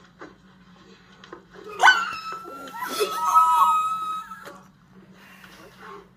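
A woman's long, high-pitched squeal of shock. It starts sharply about two seconds in and is held for over two seconds, with a lower second voice briefly underneath it.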